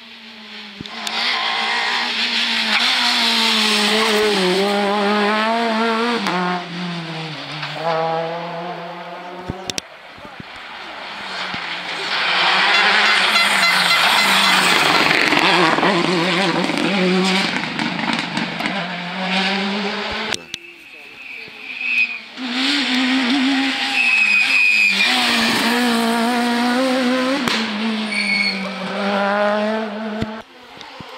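Rally cars passing at speed one after another: engines revving hard and then dropping away as they lift and brake for the bends, with tyres squealing through the hairpin. Each pass swells and fades, with short breaks between them.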